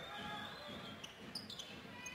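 Basketball being dribbled on a hardwood court: a few faint bounces under a low arena hubbub.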